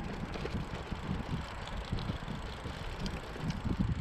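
Road bike rolling over rough, stony dirt: a steady rumble from the tyres with many small irregular knocks and rattles as it bounces over the stones.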